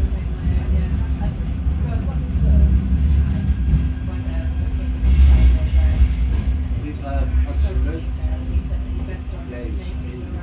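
Inside a Bombardier M5000 tram in motion: a low running rumble with a steady hum, and indistinct passenger voices in the background. A brief hiss swells about five seconds in, the loudest moment.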